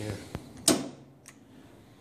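Mostly a man's voice saying "yeah", with two light clicks from the push-button control panel, one before the word and a fainter one after it. No motor is running.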